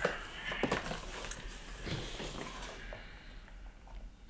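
Rummaging in a cardboard box of sneakers: rustling with a few light knocks and taps as shoes are handled and lifted out, growing quieter near the end.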